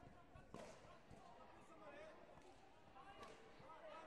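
Faint, echoing background voices in a large sports hall, with a few dull thuds, the loudest about half a second in: kicks landing and feet striking the foam competition mat in a taekwondo bout.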